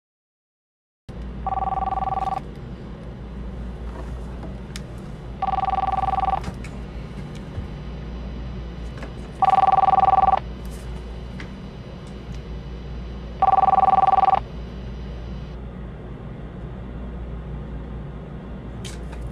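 Electronic telephone ring for an incoming call: four two-tone rings, each just under a second long, one every four seconds, the last two louder, over a steady background hum.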